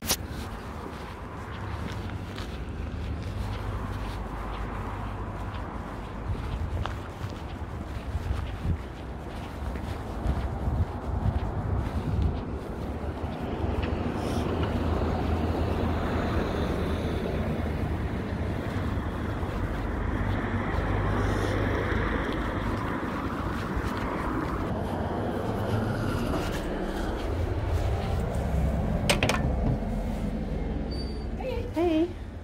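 Outdoor street noise picked up by a hand-held phone while walking: a steady low rumble of wind on the microphone, with traffic in the background. There is a sharp click about a second before the end.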